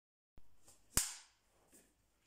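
A film clapperboard's hinged clapstick snapping shut once about a second in: a single sharp clack that dies away quickly in the small room.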